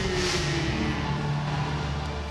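Pyrotechnic spark fountains firing over an arena, a hissing burst over a steady low rumble, with the tail of a man's long drawn-out shout, falling in pitch, fading out in the first second.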